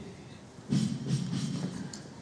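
Faint, indistinct voice sounds starting about a second in, over a low background murmur; no barbell impact stands out.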